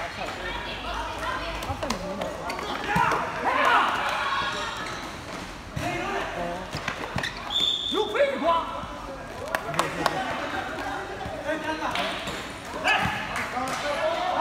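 Players' shouting voices over a futsal game, with sharp thuds of the ball being kicked and bouncing on the court, echoing in a large hall.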